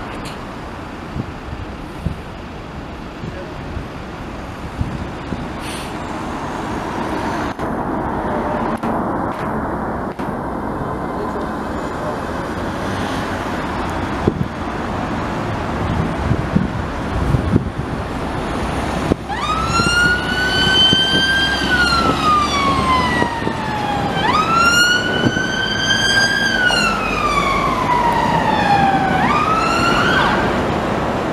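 Buses and road traffic running past, then about two-thirds of the way through an emergency-vehicle siren starts up loud, in a slow wail: each cycle jumps up in pitch and then slides slowly down over about five seconds, twice over.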